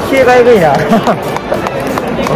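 Excited voices with music behind them, over the general noise of a stadium crowd.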